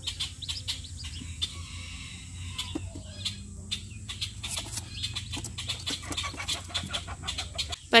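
A group of Welsh Harlequin ducklings peeping, with many small sharp clicks and taps scattered throughout.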